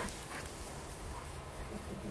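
A dog moving about close by in long grass, over a steady low rumble.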